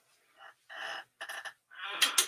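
Fabric rustling and a few quick light clicks of a clothes hanger being hooked onto a clothes rack.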